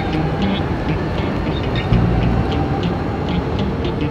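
Passenger train standing at a station platform: a steady electric hum with a few faint whining tones under the platform noise, and light regular clicks.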